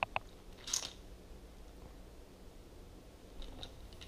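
Faint handling of plastic vacuum attachments being tried together: two sharp clicks at the start, a short scrape just under a second in, then light taps near the end.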